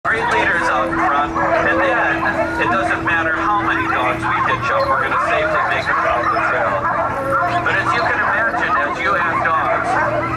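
A yard full of sled dogs barking, yipping and howling together, overlapping calls with no let-up, the excitement of dogs eager to run. A steady hum sits underneath.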